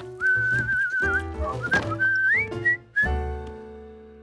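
A person whistling a short tune: a long wavering note, then a note that slides upward and a few short notes, over soft background music that fades out near the end.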